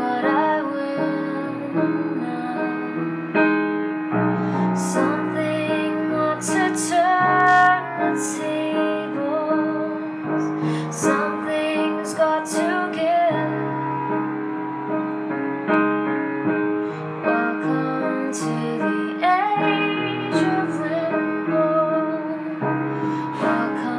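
A woman singing with her own upright piano accompaniment, the voice gliding over sustained piano chords with clear sibilants.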